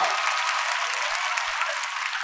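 Studio audience applauding: many hands clapping at an even pace.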